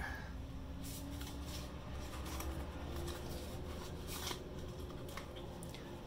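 Hands opening a small white cardboard box and handling its contents: faint rustling and scraping of card with a few soft clicks.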